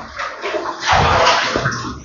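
Water splashing and sloshing in a tiled bath-water tank (bak mandi) as a man moves about in it; the splashing grows louder through the second half.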